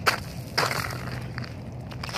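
A shoe kicking and scuffing a chunk of ice on pavement: a sharp knock at the start, then a longer crunching scrape about half a second in, and a couple of light knocks after.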